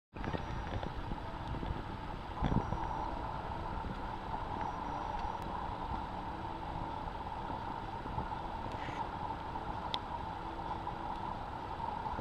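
Steady low rumble of a vehicle engine running, with a steady hum and a single dull thump about two and a half seconds in.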